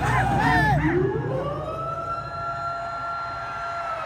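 A siren sound effect in the dance track, played over the stage speakers: about a second in the beat drops out and a single wailing tone rises in pitch, then holds steady.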